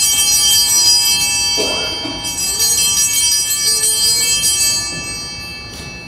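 Altar bells, a hand-held set of small bells, shaken in two long jingling rings, the second starting about two seconds in and fading away toward the end. They are rung at the elevation of the chalice after the consecration.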